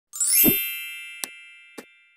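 Logo intro sound effect: a quick rising sweep into a bright ringing chime that slowly fades, then two short clicks of the animated subscribe and bell buttons.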